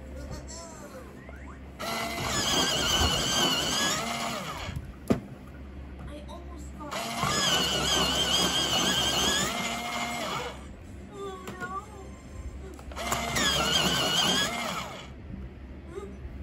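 Bostitch personal electric pencil sharpener running three times, two to four seconds each time, as its motor and cutter grind a wooden pencil; each run starts and stops abruptly.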